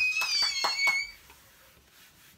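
A girl's high-pitched celebratory 'woo' squeal, rising in pitch and then held for about a second before it breaks off, with a few sharp claps under it.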